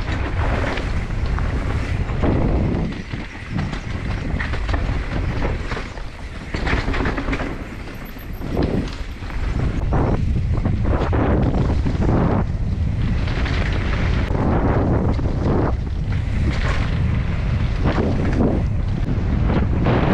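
Wind buffeting the microphone of a camera riding on a downhill mountain bike, with the bike clattering and rattling over rough, rocky trail in an irregular stream of knocks.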